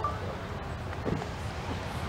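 Low, steady rumble of the distant three-core Delta IV Heavy rocket, its launch sound arriving long after liftoff.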